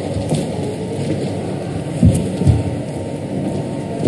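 Steady low background noise with two dull low thumps about two seconds in, half a second apart.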